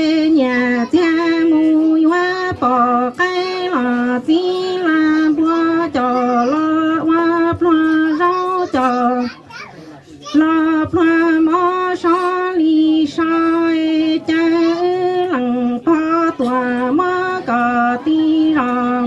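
A woman singing kwv txhiaj, Hmong sung poetry, alone into a microphone: a chant-like line stepping between a few held notes, with a short pause for breath about halfway through.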